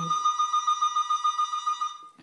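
Landline telephone's electronic ringer trilling: one ring with a rapid warbling pulse, lasting about two seconds.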